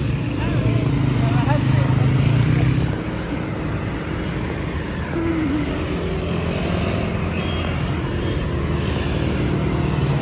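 Road traffic on a busy city road: motorcycles and cars passing close by, with a low engine sound loudest for the first three seconds, then steadier traffic noise. Faint voices of passers-by can be heard in the traffic.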